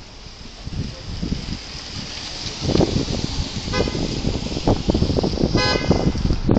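Car horn honking in two short toots, the second about two seconds after the first, over the rumble of street traffic.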